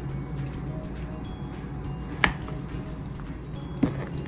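Knife slicing through a soft canned beef loaf, the blade knocking twice on a plastic cutting board, about two seconds in and again near the end, over soft background music.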